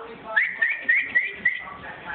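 A person whistling to call a dog: a quick run of about five rising chirps over a held note, roughly four a second, stopping near the end.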